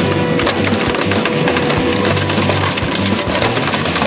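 Background music, with cracking and splintering as a 12-ton road roller's steel drum rolls onto LCD monitors.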